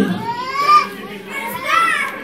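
Children's voices chattering, quieter than the amplified speech on either side, with two short spells of high-pitched talk.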